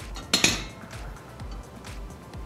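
A quick double clink of tableware, glass dishes and metal cutlery knocking together, a little way into the stretch, over soft background music with a steady beat.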